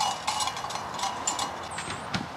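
A quick run of light metallic clinks and taps, some with a brief ringing tone.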